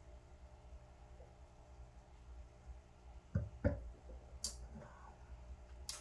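Quiet sipping and swallowing of beer from a glass: two soft gulps a little past halfway, a short breath out, then a sharp click as the glass is set down on the table near the end.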